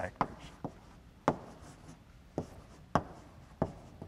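Chalk writing on a blackboard: a string of sharp, irregularly spaced taps and short scratches as letters are written.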